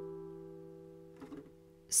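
A chord held on a digital piano, struck just before and fading away steadily. Speech begins right at the end.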